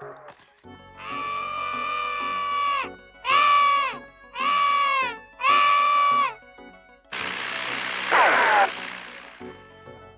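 A high, whining cartoon voice: one long held wail, then three shorter cries that drop in pitch at their ends, followed about seven seconds in by a loud hissing, screechy burst with a falling squeal.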